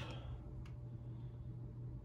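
Quiet room tone: a steady low hum with one faint click a little over half a second in.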